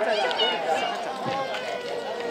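Many people's voices overlapping in steady chatter and calls from spectators on the shore, with no single clear speaker.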